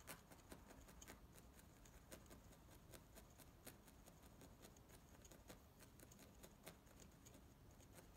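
Faint, irregular ticking of a felting needle jabbing wool roving into a foam felting pad, a few pokes a second.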